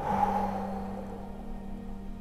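A woman's audible exhale through the mouth, a breathy rush that fades away over about a second, over soft background music with a steady held tone.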